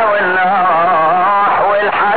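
A solo voice chanting a slow melody, holding long notes with a wavering pitch and gliding from one note to the next.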